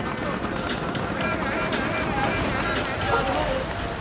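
Several people's voices talking and calling out, with no clear words, over steady outdoor background noise.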